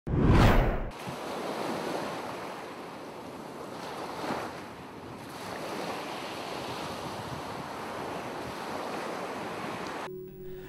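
Ocean surf: waves washing steadily. It opens with a loud rushing whoosh in the first second and swells briefly again about four seconds in.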